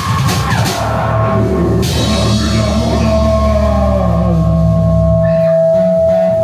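Rock band music with drum kit: drum hits in the first second, a cymbal crash about two seconds in, then a long held chord ringing out as the song ends.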